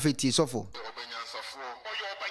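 Speech only: a man's voice speaking loudly for a moment, then a preacher's voice over a microphone, thinner and with little bass, as from a relayed broadcast.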